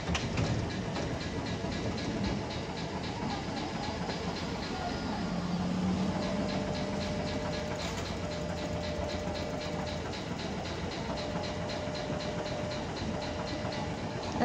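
Hankai Tramway streetcar pulling in and standing at a street stop: a steady rumble of tram and street. A faint steady tone comes and goes over the second half.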